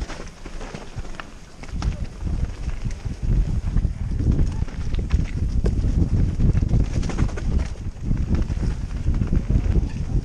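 Mountain bike descending a rough, muddy forest trail, heard from a helmet-mounted camera: a heavy rumble of tyres and wind over the microphone with scattered clattering knocks from the bike over the bumps. It gets louder from a few seconds in as the bike picks up speed.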